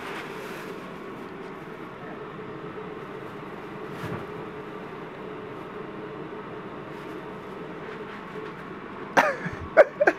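Steady low room noise with a faint hum, then near the end a short, loud cough-like sound from a person followed by a sharp click.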